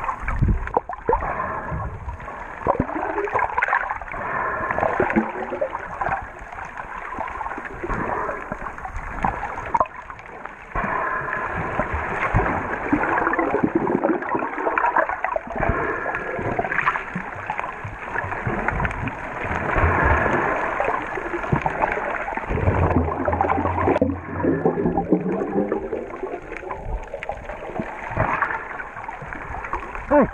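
Muffled underwater sound of churning water and bubbles from snorkellers swimming and kicking, with irregular surges in level.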